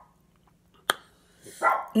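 A dog barks near the end, after a single sharp click about a second in.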